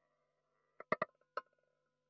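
Roulette ball on an automated wheel: a faint rolling sound fades out, then the ball clacks sharply about four times as it strikes the wheel and bounces into a pocket, settling with a few small rattles.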